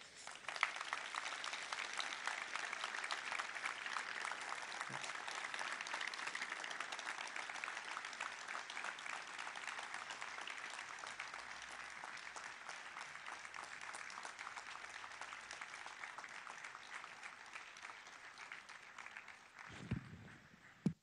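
An audience applauding: dense, steady clapping that starts at once, slowly thins and fades, and stops just before twenty seconds.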